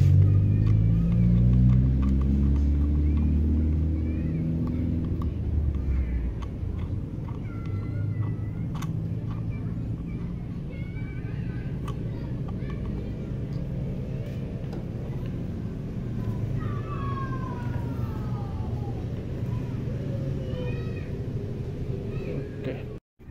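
A nearby motor vehicle's engine runs and rises in pitch, then fades over the first six seconds, leaving a steady low rumble. Occasional small clicks and faint high wavering calls come through over it, more of the calls near the end.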